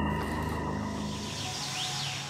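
Soft background music with long held notes fading out, giving way to faint outdoor ambient noise.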